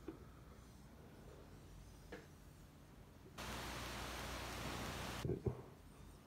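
Polished granite plate gliding across a lapped granite surface plate, making a faint steady hiss that starts about three and a half seconds in and stops suddenly about two seconds later.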